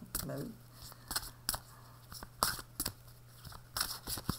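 A deck of oracle cards being shuffled and handled by hand: about six sharp card snaps, spaced irregularly, over a faint low hum.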